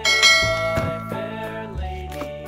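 A bright bell chime strikes right at the start and rings out, fading over about a second and a half, over children's background music.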